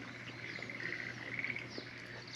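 Faint outdoor nature ambience: light chirping and a steady high trill from wildlife in the surrounding woods, over a steady low hum.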